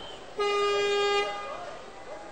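An electric buzzer in a volleyball arena sounds once for just under a second: a steady, flat buzzing tone with many overtones. It is the signal for a team's substitution request.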